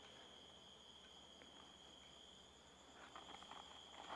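Near silence: room tone with a faint, steady high-pitched whine. A slight stir comes in the last second.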